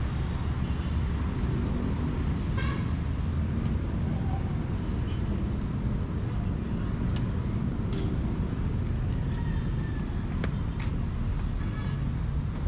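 Steady low rumble of street traffic, with a few faint clicks and a brief high-pitched sound about three seconds in.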